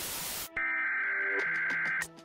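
Static hiss that cuts off sharply about half a second in, then a steady, high electronic alert tone like the Emergency Broadcast System attention signal, with fast regular ticks under it.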